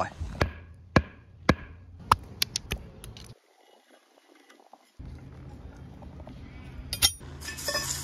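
Steel lid-lifting keys clinking and knocking against a concrete access-pit cover: a string of sharp metallic taps about half a second apart, then after a short quiet break a brief scraping rasp near the end.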